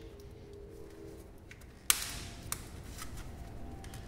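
A sharp plastic click about two seconds in, followed by a couple of fainter clicks: the locking tab of the throttle body's electrical connector being pinched and the plug pulled free.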